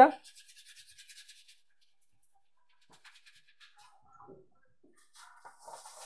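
Coarse salt and lime juice being scrubbed around the inside of a copper pot to strip its tarnish. It is a faint gritty rubbing: a quick run of scratchy strokes in the first second and a half, then a rougher, hissier rubbing near the end.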